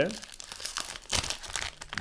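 Foil trading-card booster pack wrapper crinkling in the hands as it is opened, in a run of irregular crackles.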